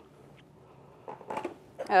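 Quiet room with a few faint, short handling sounds about halfway through; a woman's voice starts at the very end.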